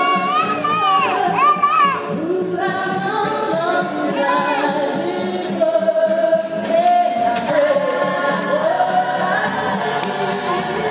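Gospel choir singing live through a PA, a woman's lead voice out front; her lead line bends and ornaments through the first two seconds while the choir holds chords beneath.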